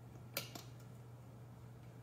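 A single light click about half a second in, against a faint steady hum: a trumpet piston valve fitted with a heavyweight valve top being pressed down by a finger.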